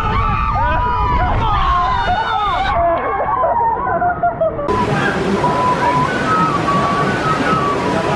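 Churning river-rapids water rushing and sloshing around a round raft-ride boat, with riders yelling and shouting over it. About two-thirds of the way through, the sound changes to a steadier rush of water, with faint music in the background.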